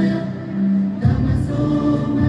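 Choir singing a devotional song with instrumental accompaniment: a long held note, then the beat comes back in about a second in.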